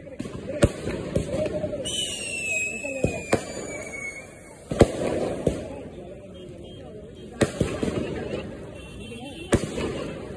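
Diwali sky-shot aerial fireworks bursting overhead: a series of sharp bangs at irregular intervals, about nine in all. Early on, a high whistle falls in pitch for about two seconds.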